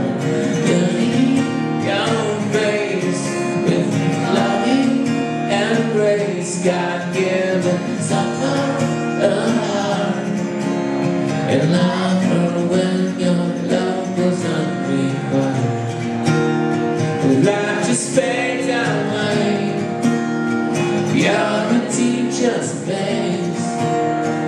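Acoustic guitar strummed steadily in a solo live performance, ringing chords played continuously.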